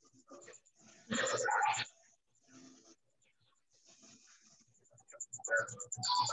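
An animal call, loud and under a second long, about a second in, coming through a video-call microphone, with fainter scattered sounds around it.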